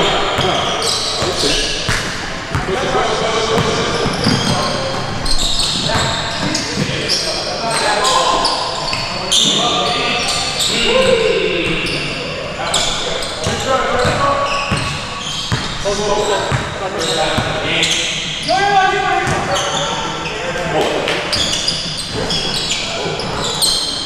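Basketball bouncing on a gym floor during live play, with repeated sharp bounces, and players' voices calling out, echoing in a large hall.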